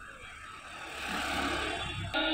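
Outdoor street background noise: a hiss with a low rumble that grows louder about halfway through, typical of passing traffic.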